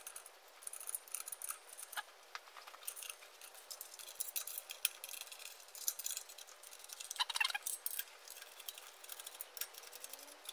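Small metallic clicks and clinks of a socket ratchet and steel bolts being worked into a cast clutch pressure plate, with a quick run of ratchet clicking about seven seconds in.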